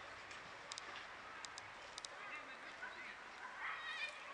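Faint outdoor ambience with small birds chirping: short high calls, more of them in the second half.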